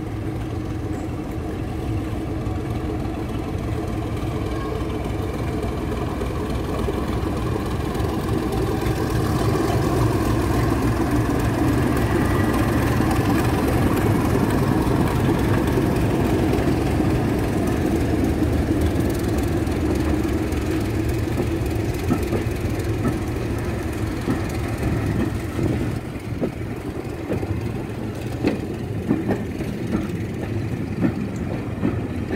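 A British Rail Class 31 diesel locomotive's English Electric V12 engine running as the locomotive passes slowly, growing louder as it draws level and then easing off. Near the end the coaches' wheels click over the rails.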